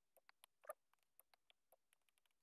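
Near silence with a dozen or so faint, irregular clicks of a stylus tapping on a tablet screen while writing.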